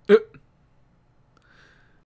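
A single short, sharp vocal burst from a person's voice about a tenth of a second in, like a one-note laugh or hiccup. After it there is only a faint hiss.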